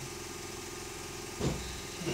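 A steady, even motor-like hum, with one short low noise about one and a half seconds in.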